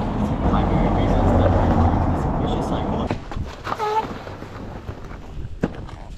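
Street traffic: a vehicle driving past on a cobbled street for about three seconds. Then the sound drops away suddenly to quieter street noise, with a brief voiced murmur in between.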